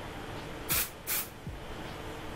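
Aerosol can of dry shampoo sprayed in two short bursts, less than half a second apart, about three-quarters of a second in.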